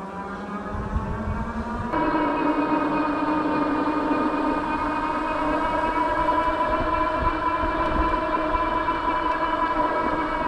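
Bakcou Grizzly electric scooter's motor whining under load up a long paved grade: a high whine that climbs slightly in pitch over the first two seconds, then grows louder at about two seconds and holds steady, over low wind rumble on the microphone.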